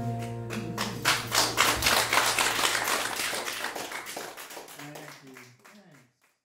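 The final acoustic guitar chord rings out, and about a second in a small audience begins applauding. The applause fades away toward the end.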